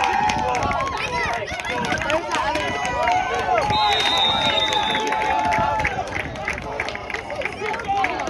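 Many voices shouting and cheering over one another as a football play runs, with a steady high whistle blast lasting about a second, some four seconds in.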